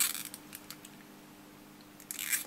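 Thin metallised polyester capacitor film crinkling between fingers: a light crackle at the start and a few faint ticks over the first half second, then only a faint steady hum.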